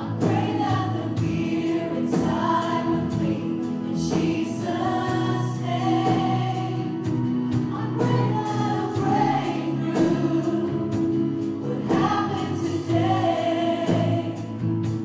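Live worship band: a group of singers singing together in held notes over acoustic guitar and keyboard, with a steady beat.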